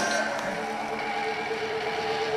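A steady held tone through the stage sound system, over the low background noise of the crowd.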